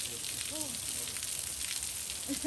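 Snowmelt seep water falling off a sandstone cliff overhang in a steady shower of drops, pattering onto the rocks and pool below.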